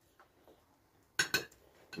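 Metal forks clinking against ceramic plates while eating: a couple of faint ticks, then two sharp clinks in quick succession a little over a second in.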